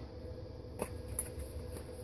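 Faint handling clicks from a plastic tube of epoxy putty being turned in a hand, twice about a second in, over a low steady hum.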